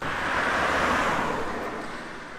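A car passing close by on the road, its tyre and road noise strongest about a second in and then fading away.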